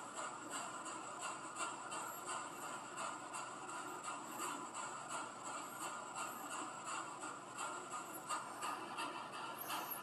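Steady hiss of electronic static with faint, irregular crackles, from a ghost-hunting spirit-box app running on a phone.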